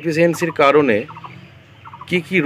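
A man speaking in Bengali for about a second, then a short pause.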